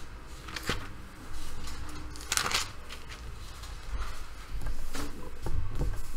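Thin Bible pages being leafed through and turned by hand, in several separate rustling flips, the longest about two and a half seconds in.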